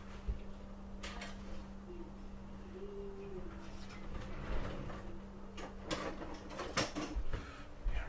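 A metal baking sheet and oven rack knocking and scraping as the sheet is slid out of the oven, with a few sharp clanks clustered near the end. A steady low hum runs underneath and stops shortly before the end.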